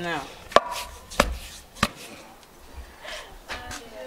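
Wooden pestle pounding roasted peanuts in a wooden mortar (pilão): three sharp strikes about 0.6 s apart in the first two seconds.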